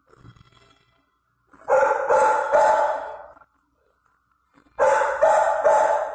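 Dog barking in a shelter kennel: two bouts of three quick barks each, the first about two seconds in and the second near the end.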